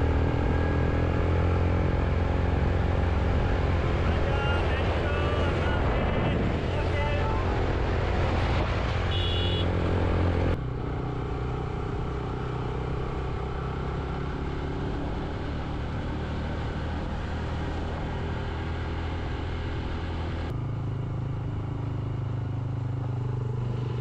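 A vehicle engine running steadily under load with road noise as it drives a rough gravel road. The sound drops abruptly about ten seconds in and shifts again about twenty seconds in.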